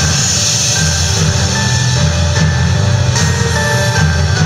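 Gothic metal band playing live, heard loud from within the crowd: held melody notes over a heavy, continuous low end.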